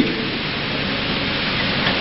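Steady, even hiss of background noise with no distinct events, at a fair level.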